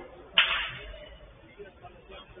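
A single sharp smack from a football being struck on the pitch, about half a second in, fading away over about half a second.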